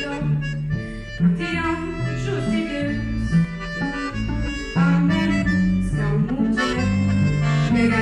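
Accordion and cello playing a tune together, with sustained low notes under the moving accordion melody.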